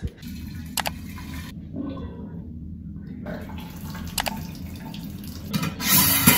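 Water running while a large glass jar is washed out to disinfect it, with two sharp clicks of glass and a louder hiss near the end.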